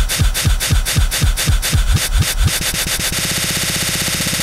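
A hip-hop track chopped by a DJ app's loop: a short slice with a kick drum repeats about four times a second, then the loop shortens, and from about three seconds in it becomes a rapid buzzing stutter.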